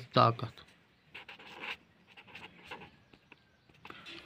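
A man's voice speaking a word at the start, then a pause filled only with faint, soft sounds.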